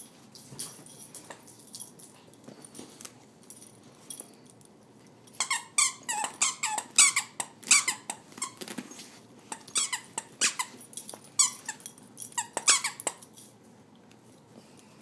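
Plush squeaky dog toy squeaking again and again as a Chihuahua bites and chews it: quiet for the first few seconds, then a fast run of sharp, high squeaks starting about five seconds in and stopping about a second before the end.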